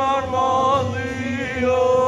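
Male voices singing a slow song unaccompanied, in long held notes that slide between pitches.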